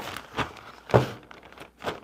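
Large plastic zipper bag rustling in short strokes as a spool of 3D-printer filament is slid into it, with a dull knock about a second in.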